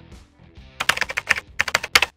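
Computer keyboard typing sound effect: two quick runs of crisp key clicks, the first starting just under a second in and the second after a short gap, over soft background music.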